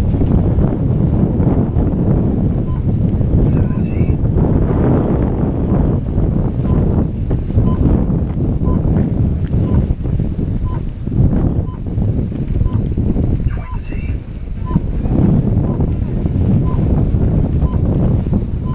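Strong wind buffeting an outdoor microphone, a loud, uneven low rumble that rises and falls in gusts. A faint short beep sounds about once a second, and a faint higher call is heard twice.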